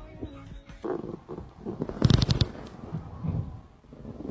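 A dog's sounds close to the microphone, irregular, with a louder burst of rapid pulses about two seconds in. A short stretch of background music stops just before them.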